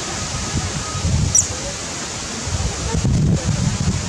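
Steady outdoor background noise with an irregular low rumble of wind buffeting the microphone, getting stronger about two and a half seconds in. A brief high chirp sounds about a second and a half in.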